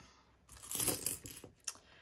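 Coins clinking as a hand slides them off a cash envelope and spreads them out on a desk mat: a short run of clinks about half a second in, then a single click near the end.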